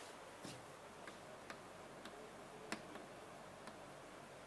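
Chalk clicking and tapping against a blackboard while figures are written: a handful of short, sharp, irregular taps over a faint steady hiss, the loudest a little under three seconds in.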